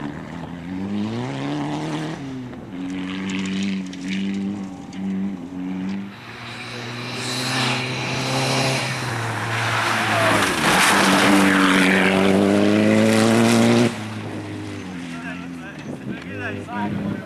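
Rally VW Golf's engine revving hard through gear changes, the revs rising and falling in short bursts, then building to a loud pass close by with tyre and dirt noise. The sound drops suddenly near the end.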